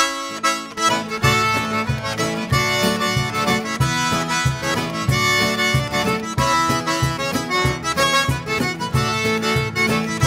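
A Cajun single-row button accordion playing a lively dance tune, with acoustic guitar strumming and a cajon keeping a steady beat. The band kicks in together right at the start.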